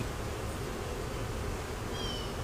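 A colony of honeybees buzzing steadily around an open nuc hive with its frames exposed.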